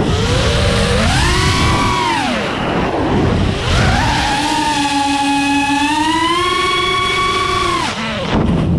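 Small multirotor drone's electric motors whining, the pitch rising and falling with throttle. A climb and fall in the first few seconds is followed by a longer high whine that drops off sharply at the end, over a rushing of air.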